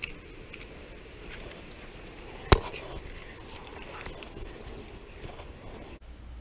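Handling noise from a fishing rod and reel being worked on a kayak, with faint scattered clicks and one sharp knock about halfway through.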